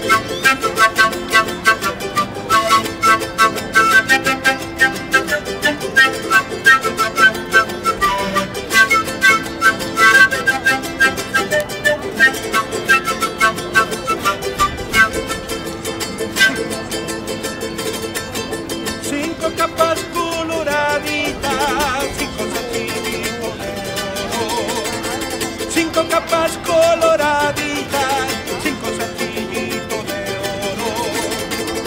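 Andean folk music played live on acoustic guitar and panpipes, with no singing. The first half is a fast run of short, bright plucked notes. From about twenty seconds in, held, wavering notes come to the fore.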